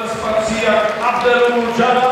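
A man's voice over the arena's public address, calling out in long drawn-out held tones, in the manner of a ring announcer.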